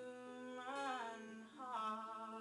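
A woman humming a wordless melody over a strummed acoustic guitar, her voice sliding in pitch through two short phrases.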